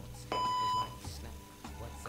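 LifePak 15 cardiac monitor/defibrillator giving a single electronic beep of about half a second as it finishes its power-on self-test.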